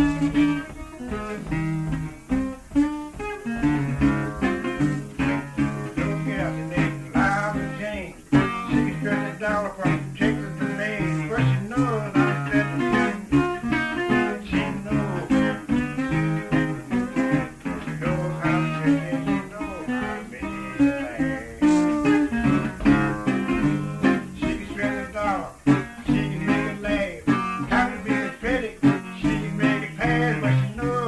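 Acoustic guitar playing a blues, with a steady bass line under quicker plucked treble notes.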